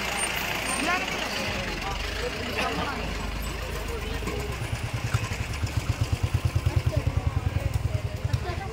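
An engine idling with a low, fast, even throb that grows louder about halfway in, under the chatter of a crowd.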